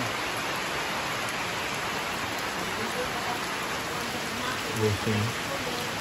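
Heavy rain falling steadily on bamboo walkways and thatched roofs, an even hiss.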